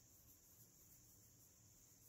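Near silence: faint room tone with a steady high-pitched hiss and a low hum.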